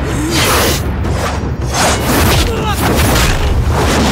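Film fight sound effects: a rapid string of heavy hits and whooshes, roughly two a second, with men's short shouts and grunts, over a low booming rumble.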